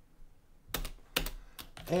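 Computer keyboard keystrokes: after a short quiet spell, a few separate key clicks just under a second in and over the next second.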